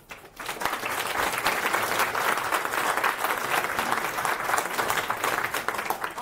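Audience applauding at the end of a conference talk, dense clapping that builds up within the first second and tails off near the end.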